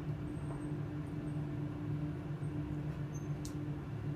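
Steady low hum inside a Schindler 7000 double-deck elevator car, held at a floor while the other deck serves another floor, with a single sharp click shortly before the end.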